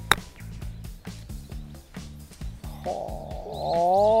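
A 60-degree wedge clipping a golf ball on a short, lofted pitch shot: one sharp, crisp strike just after the start. Background music with a steady beat runs throughout, and near the end a rising, whistle-like tone swells in.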